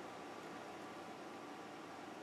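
Quiet room tone: a faint, steady hiss with no distinct handling clicks or tool sounds.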